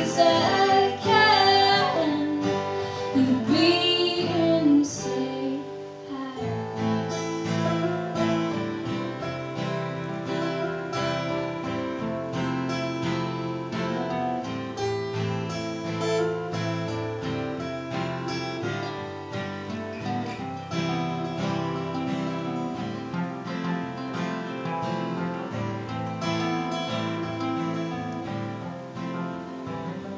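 Two acoustic guitars playing an instrumental break of a folk-pop song, strummed and picked steadily. A sung line trails off in the first five seconds.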